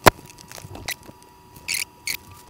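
Cardboard product box being opened by hand: a sharp snap as the lid comes open, a lighter click just under a second in, then two short crinkles of clear plastic film packaging near the end.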